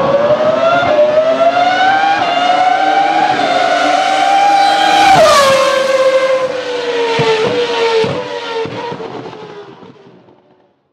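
Racing car engine sound effect: the engine revs up steadily for about five seconds, drops sharply in pitch, then winds down and fades out near the end.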